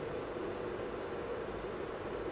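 Steady, faint hiss of studio room tone and recording noise, with nothing else sounding.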